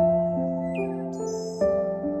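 Gentle instrumental background music: soft keyboard notes struck one after another, about two a second, each fading slowly, with a brief high chirp near the middle.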